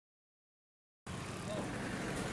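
Silence for about the first second, then steady outdoor roadside background noise cuts in abruptly.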